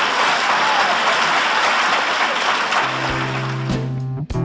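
Loud crowd applause and cheering, an added sitcom-style audience sound. About three seconds in, music with plucked guitar begins.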